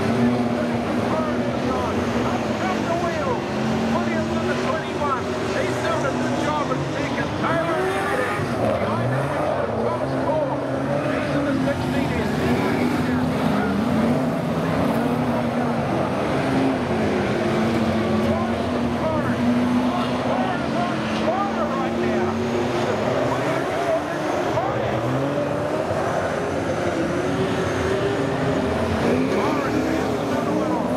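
A pack of V8 saloon cars racing on a dirt oval. Several engines are heard at once, their notes rising and falling over and over as the drivers throttle through the turns.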